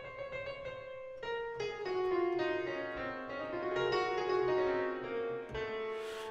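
Piano-like keyboard playback of a rapid fluttering figure: a held note, then from about a second in a stream of quick short notes winding up and down, settling onto a held note again near the end.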